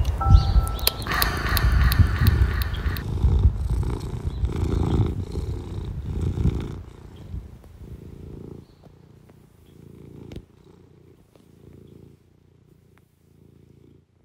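A domestic cat purring in a rhythm of pulses about a second apart, loud at first and fading away over the second half.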